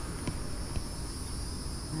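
A steady, high-pitched chorus of insects in the yard, with a couple of faint clicks in the first second.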